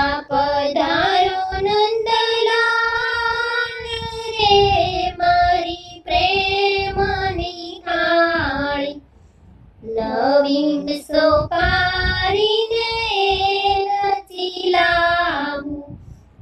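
A high-pitched voice singing a Gujarati devotional thal, a food-offering song to Krishna, in long held phrases, with a short break about nine seconds in.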